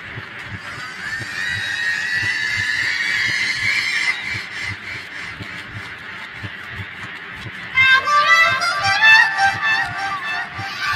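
Layered, effect-processed cartoon soundtrack audio. A honk-like pitched call slides upward over the first few seconds, and a louder cluster of stacked honking calls comes near the end, all over a quick steady low beat.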